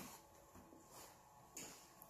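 Near silence: room tone, with one faint, brief soft noise about one and a half seconds in.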